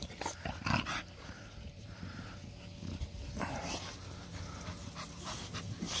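American bully dogs breathing and sniffing at close range: a few brief, soft breaths or snuffles.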